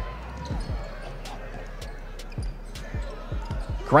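A basketball bouncing on a hardwood court: a series of short dull thumps at an irregular pace.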